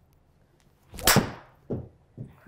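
TaylorMade 320 Ti driver swung through and striking a golf ball off the hitting mat: one sharp hit about a second in, after a quiet address.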